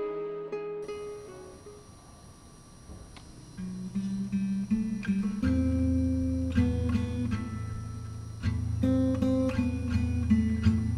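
Background music: a soft earlier passage fades out, then an acoustic guitar begins picking single notes, filling out with lower notes about halfway through.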